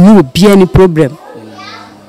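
A woman speaking close to a handheld microphone for about the first second, then a short lull with faint voices in the background.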